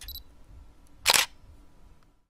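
Camera shutter sound effect: a single sharp click-snap about a second in, over a faint low rumble.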